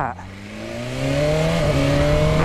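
BMW S1000RR's inline-four engine accelerating under throttle, its pitch rising steadily as it grows louder, with a brief break near the end.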